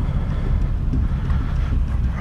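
Steady low rumble of an idling motorcycle engine under wind buffeting the microphone.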